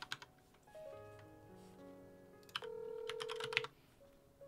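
Soft background music with held notes, and short quick taps near the start and again a little over two and a half seconds in: a phone call being placed, with keypad tones.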